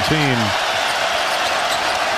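Arena crowd noise picked up by the radio broadcast's courtside microphone, with a basketball bouncing on the hardwood court. A man's commentary voice stops about half a second in.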